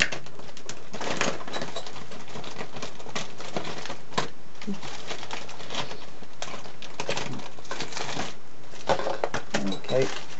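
Steady background hiss with scattered faint clicks and rustles.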